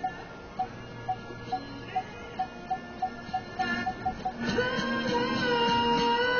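Car parking-sensor beeping, short high pips coming faster and faster as the car closes on an obstacle while parallel parking. Music plays underneath and grows fuller about four and a half seconds in.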